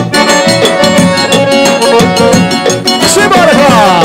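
Forró band playing live: accordion over a zabumba drum beat and acoustic guitar, in a steady dance rhythm, with a quick falling accordion run near the end.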